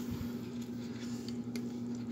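Faint handling of plastic LEGO bricks, with a soft low thud just after the start, over a steady low hum.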